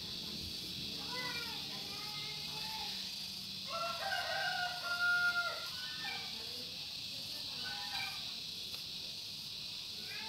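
Rooster crowing in the background: the loudest, longest crow comes about four seconds in, with fainter crows or calls near the start and around eight seconds.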